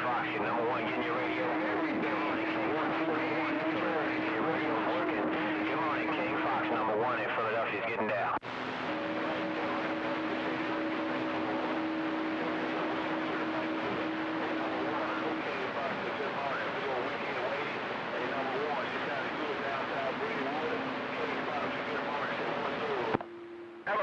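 CB radio speaker receiving distant skip stations on a crowded channel: several weak voices talk over one another through static, with steady whistling tones underneath. The signal drops out briefly about eight seconds in and again near the end.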